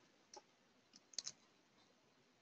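Near silence with a few faint computer-mouse clicks, a quick pair just over a second in.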